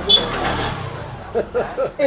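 A motor vehicle passing close by, a rushing noise with a low rumble that fades over about the first second, followed by a voice.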